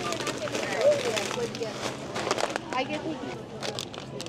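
Indistinct chatter of a crowded grocery store, with scattered clicks and crinkles of plastic and foil packaging being handled.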